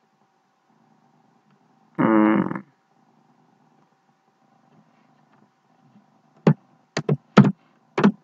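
A man's drawn-out hesitation sound, an "uhh", about two seconds in, then a few short clipped spoken syllables near the end. In between come faint keyboard taps over a faint steady tone.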